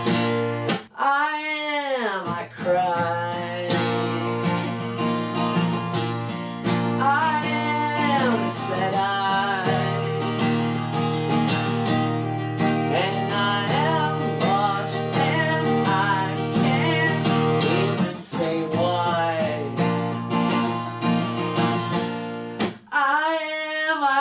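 Steel-string acoustic guitar strummed in chords, with a man singing long, bending phrases over it.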